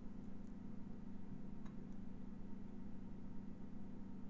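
Faint steady low hum of room tone, with one faint tick about a second and a half in.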